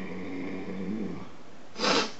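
A man's drawn-out, low, croaky vocal sound, an E.T.-style voice impression held on one gravelly pitch for about a second. It is followed just before the end by a short, loud puff of breath.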